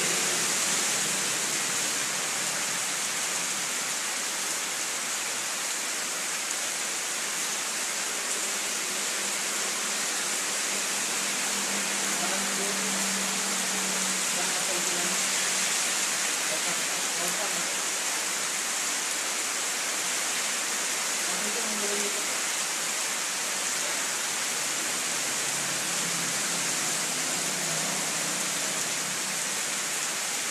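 A steady, loud hiss with faint, indistinct voices murmuring underneath at times.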